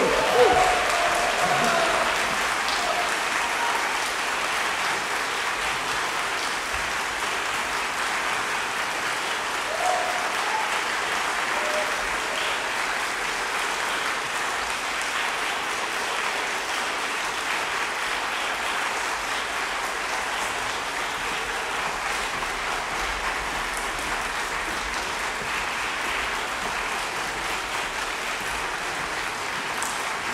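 Concert audience applauding steadily, loudest in the first couple of seconds and then holding at an even level.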